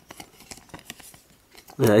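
Faint rustling and light clicks of Pokémon trading cards being shuffled and handled between the fingers, followed near the end by a man starting to speak.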